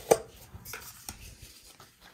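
A compact phone tripod being handled: a brief click just after the start, then faint light rattling of its plastic and metal parts.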